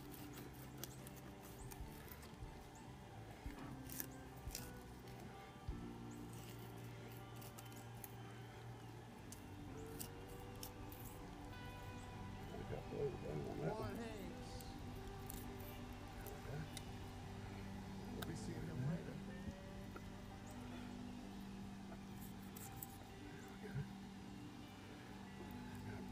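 Background music: a slow song with held chords and a singing voice at times, with faint scattered clicks of a knife on a plastic cutting board.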